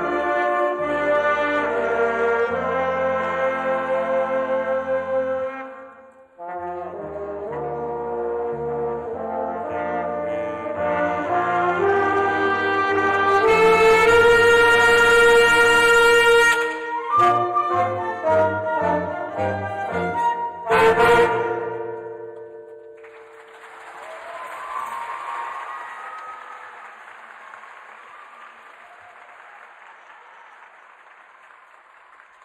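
School concert band with brass and woodwinds playing the closing bars of a piece. There is a short break about six seconds in, then a loud held chord and a run of short accented chords ending on a final hit about 21 seconds in. Audience applause follows and fades.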